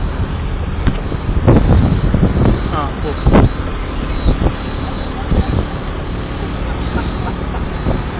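Steady engine and road rumble of a moving car heard from inside the cabin, with a thin, steady high-pitched whine. Short bursts of voices come between about one and a half and three and a half seconds in.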